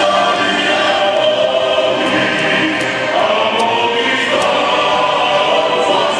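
Many voices singing an anthem together in a steady, sustained choral melody.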